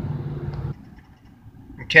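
Steady engine and road hum of a car driving, heard inside the cabin, cutting off suddenly under a second in and leaving a much quieter cabin.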